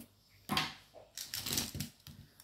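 A handful of plastic Zebra disposable fountain pens clicking and rattling against each other as they are gathered up in the hands. There is one sharp click about half a second in, and a quick run of small clicks a little after the first second.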